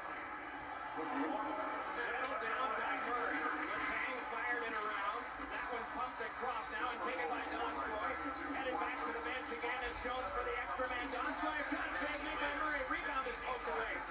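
A televised ice hockey broadcast playing in the room: faint play-by-play commentary heard through the TV speakers.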